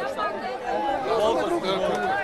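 Many voices talking and calling out over one another: spectators' chatter at a football match.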